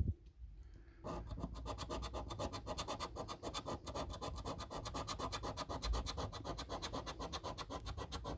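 Coin scraping the silver coating off a paper scratch card in quick, rhythmic back-and-forth strokes, starting about a second in.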